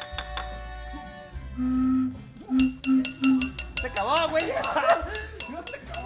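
A bell-like metal object struck rapidly over and over, ringing clinks about four a second starting around the middle, used as the round bell to mark time in a sparring round. Just before, a low tone sounds once long and then three times short, and voices shout over the clinks.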